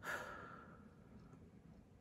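A soft sigh: one breathy exhale that starts sharply and fades away over about a second and a half.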